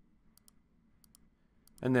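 Faint computer mouse clicks, three quick pairs about half a second apart, like double-clicks.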